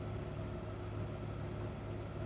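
GM L5P Duramax 6.6-litre turbodiesel V8 idling steadily on the dyno after being brought back down from its turbocharger limit, a low even hum.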